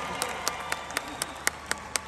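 A concert crowd applauding, with one set of sharp hand claps close by, about four a second.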